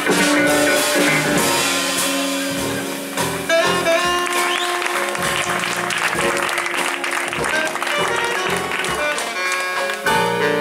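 Live funk-jazz band playing, with trumpet, saxophone, electric guitar and drum kit, and audience applause through the middle.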